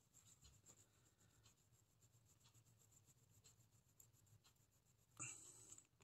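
Near silence, with the faint scratch of a water-soluble oil pastel stick rubbed back and forth on sketchbook paper; a brief louder rub about five seconds in.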